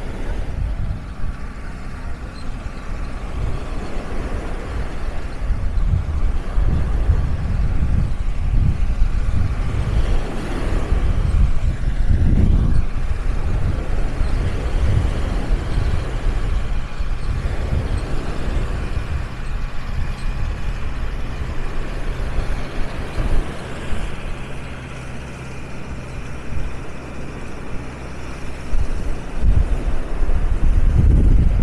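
A tractor engine running steadily, mixed with waves washing onto the shore and wind on the microphone; the engine grows louder near the end.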